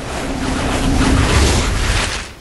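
A loud rushing whoosh, like a gust of wind, that swells to a peak and dies away near the end. It is the film's sound effect for Death Eaters arriving as clouds of black smoke.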